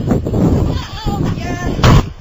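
Voices over rough, loud noise, then a loud bang just before the end.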